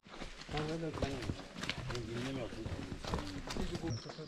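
Several people talking indistinctly while walking, with scattered footsteps on a stony dirt trail.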